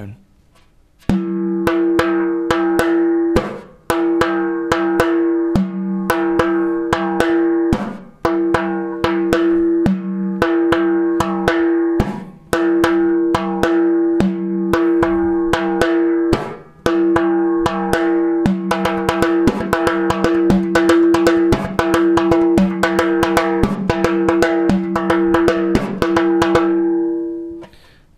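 Hand-played frame drum playing a simple repeated rhythm of ringing open bass tones, high tones and a slap tone, the second open bass tone of the pattern struck as a slap. The phrase repeats with short breaks about every four seconds at first, then runs on with denser strokes until near the end.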